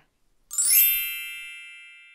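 A sparkly chime sound effect: about half a second in, a quick upward run of bright bell-like tones that then ring on together and fade away slowly.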